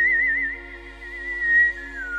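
Mouth whistling of a song melody: a long held note with a wide, even vibrato that fades about half a second in, then a short note and a downward slide to a lower note near the end. Sustained MIDI keyboard chords play underneath.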